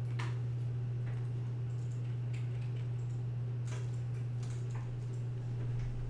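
A handful of computer mouse clicks, scattered and irregular, over a steady low electrical hum.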